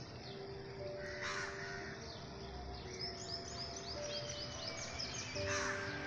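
Soft background music with long held notes, over outdoor bird calls. A crow caws about a second in and again near the end, and a quick run of high chirps comes in between.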